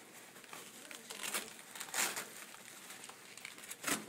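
Rustling and crinkling of MAST anti-shock trousers as they are wrapped and fastened around a patient's legs, with a few short scratchy bursts.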